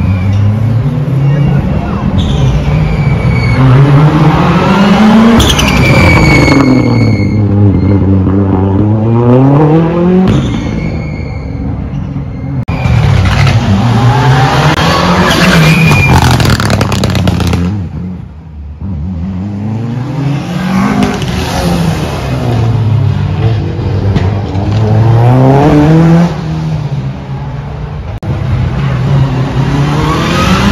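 Stage rally cars driven hard past the fence, engines revving high and dropping through gear changes, the pitch climbing and falling over and over as each car goes by, with a brief lull about eighteen seconds in.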